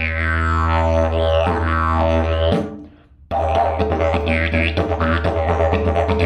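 Didgeridoo in the key of E, a termite-hollowed eucalyptus tube with a beeswax mouthpiece, played with a steady low drone and sweeping vowel-like overtones. The drone stops for under a second about two and a half seconds in, then comes back with a busier rhythmic pattern.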